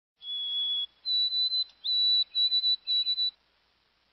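A bird singing a song of clear, pure whistled notes: one lower held note, then a higher held note followed by three shorter notes at that same pitch.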